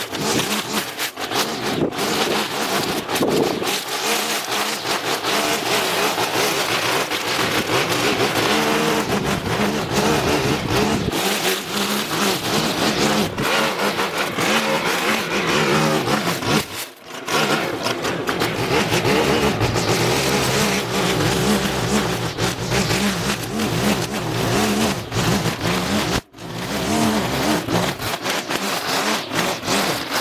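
Small gasoline engine of lawn-care equipment running steadily, its pitch wavering, cut by two sudden short gaps.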